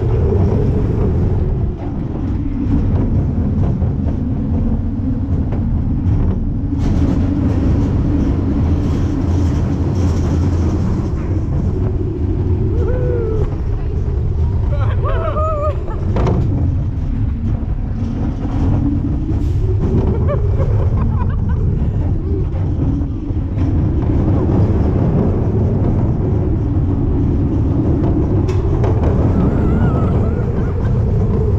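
Steel looping roller coaster at speed, heard from a camera on the car: a steady loud rumble of the train on its track with rushing air. Riders let out a few short cries and yells around the middle.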